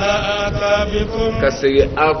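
A man's voice chanting a Quranic recitation: one long, drawn-out note held steady for over a second, then a few shorter melodic phrases.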